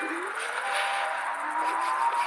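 Electric hub motor of an Ariel Rider X-Class e-bike on a Phaserunner controller whining as the bike pulls away, the pitch slowly rising, over a steady hiss of wind and tyre noise.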